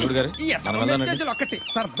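A man's drawn-out voice, joined a little under a second in by a run of high electronic beeps that jump between several pitches.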